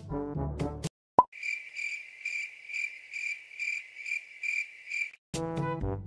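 Background music cuts off, a single short pop sounds, then a high, evenly pulsed cricket-chirp sound effect runs for about four seconds, about two to three chirps a second, before the music comes back.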